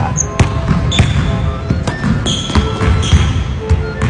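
A basketball being dribbled on a wooden gym floor, bouncing about twice a second.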